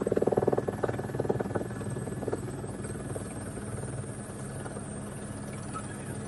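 Helicopter running steadily, heard from on board: a rapid rotor beat over a steady engine hum. The beat is strongest in the first couple of seconds.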